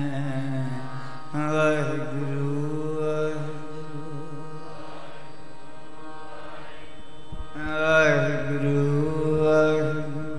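Sikh kirtan: a male raagi singing drawn-out melodic phrases whose pitch rises and falls, over a steady held harmonium accompaniment. The voice swells twice, about a second and a half in and again near the end.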